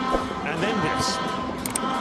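Male commentator speaking briefly over the steady noise of a stadium football crowd.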